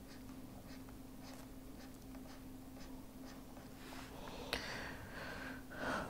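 Stylus scratching in short strokes on a pen tablet while hatching a drawing, faint and repeating about once or twice a second, over a steady low electrical hum; a sharper tick comes a little after four seconds.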